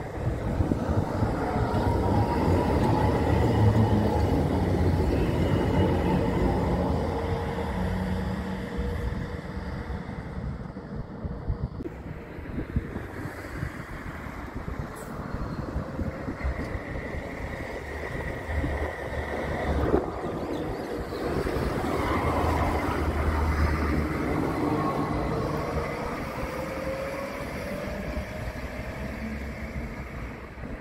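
Electric trams passing on a curved track, two in turn. The first runs past close and loud with rail rumble and a steady whine. Later a second approaches with a brief high squeal, passes, and pulls away with a rising motor whine near the end.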